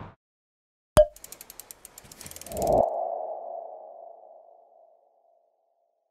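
Animated logo sting sound effect: a sharp hit about a second in, then a quick run of clicks with a low rumble under them. A ringing tone follows, swelling and then fading away over about two seconds.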